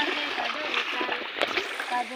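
Feet splashing through a shallow stream as someone runs through ankle-deep water, with a sharper splash about a second and a half in. Voices talk and call under the splashing.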